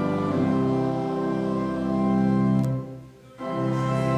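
Church organ playing sustained chords. The sound breaks off for about half a second near the end, then resumes with the next phrase.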